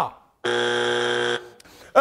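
Electronic game-show buzzer sounding once: a flat, steady tone lasting about a second that starts and cuts off abruptly.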